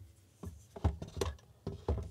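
Handling noise: about five soft knocks and clicks, two of them with a low thump, spread through the two seconds.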